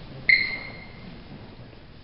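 A single high, clear ping about a third of a second in. It starts suddenly and fades away within about a second, over faint room hiss.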